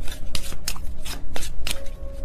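A tarot deck being shuffled by hand: an uneven run of quick, sharp card snaps and slaps, several each second.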